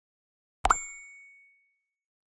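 A synthetic notification chime: a short pop followed by one bright bell-like ding that rings out and fades over about a second, the sound effect for clicking a subscribe bell icon.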